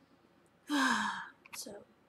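A woman's heavy, voiced sigh, dropping in pitch and lasting about half a second, followed by a short breath.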